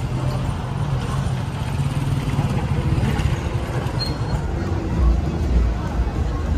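A motorcycle engine running in the street among voices of passers-by. A steady low drone in the first half, then a louder low rumble about five seconds in.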